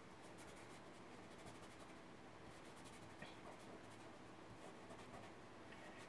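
Faint rubbing of a fingertip over graphite on drawing paper, blending pencil shading, with one small tick about three seconds in.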